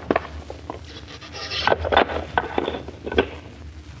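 Sound effect of a wooden floorboard being pried up with a hammer: a run of wooden creaks, scrapes and sharp knocks, busiest between about one and two seconds in.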